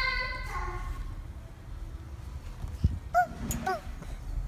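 A toddler's high-pitched squeal that ends about half a second in, then low rumbling with one sharp thump from the trampoline, and two short high yelps near the end.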